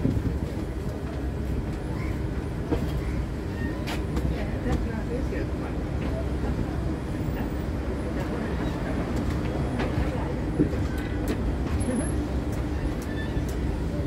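Passenger train rolling slowly out of a station, heard from an open coach doorway: a steady low rumble with scattered clicks and knocks from the wheels and coaches, the sharpest knock about three-quarters of the way through.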